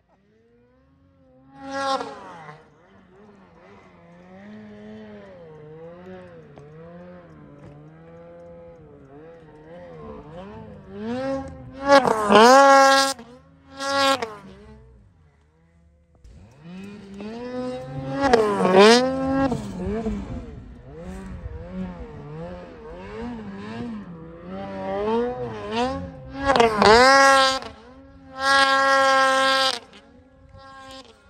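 Snowmobile engine revving up and down through deep powder, its pitch wavering constantly. It comes in about two seconds in and goes to loud high-revving bursts about twelve seconds in, again near nineteen seconds and near the end.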